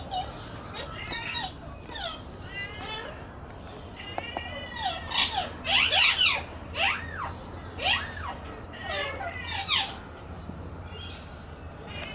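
Australian magpies calling: a series of warbling calls that glide up and down in pitch, loudest and densest about four to ten seconds in.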